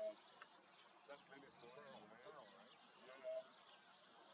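Faint, indistinct voices murmuring outdoors, with two brief steady tones, one at the very start and one a little after three seconds in.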